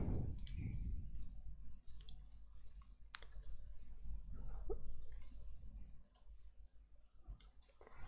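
A computer mouse clicking a few scattered times, over a faint low room hum.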